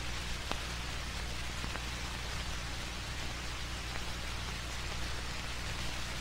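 Steady hiss and low hum of an old film soundtrack, with a few faint clicks.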